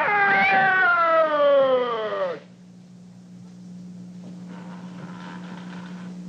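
A high-pitched voice crying out in one long wail that falls steadily in pitch and cuts off about two and a half seconds in, leaving a steady low hum.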